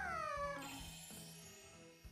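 A high voice from the anime's soundtrack sliding down in pitch in one drawn-out whine, ending under a second in, over soft background music that fades away.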